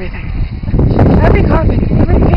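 A woman's voice close to the microphone, talking in short phrases whose pitch rises and falls, strongest about a second in, over a steady low rumble.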